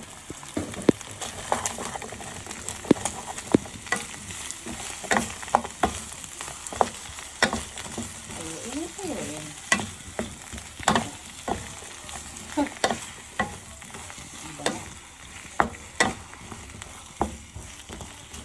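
Chicken pieces and sliced onions sizzling in oil in a frying pan, with irregular sharp knocks and scrapes as a wooden spatula stirs them.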